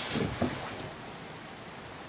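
A child's body and clothes sliding along a plastic tube slide: a rustling swell near the start that fades to a lower hiss, with a couple of faint clicks just before the middle.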